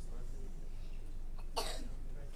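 A single short cough near the end, over a faint murmur of voices.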